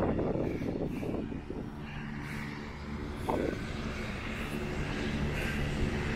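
Wind buffeting the microphone at first, giving way to an engine running steadily at an even pitch.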